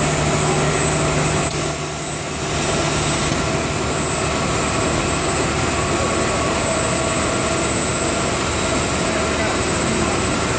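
Blown film extrusion line running: a steady machine din with a constant high-pitched whine. A low hum drops out about a second and a half in, and the sound briefly dips just after.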